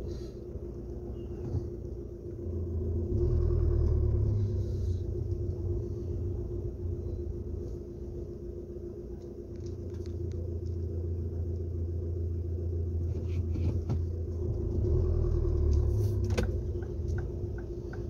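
Low, steady rumble of a car's engine and cabin as it idles and creeps forward in slow traffic, swelling louder a couple of times as it pulls ahead.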